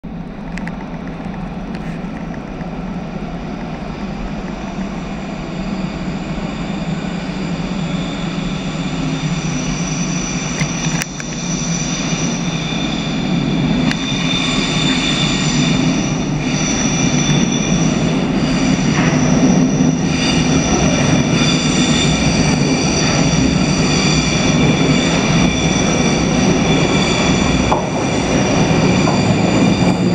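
GVB Amsterdam metro train of M2/M3 stock approaching through the tunnel into an underground station, its running noise growing steadily louder, with steady high-pitched whining tones over the rumble as it draws near the platform.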